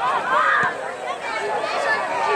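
Overlapping shouts and chatter of spectators and young players, with no clear words.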